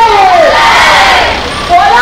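A crowd of marching students shouting together, many voices at once: a loud cry that falls in pitch at the start, then a dense mass of shouting voices.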